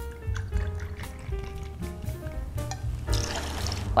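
Background music with a steady bass beat, over rum being poured from the bottle into a jigger and mixing glass, the pour showing as a brief hiss of liquid about three seconds in.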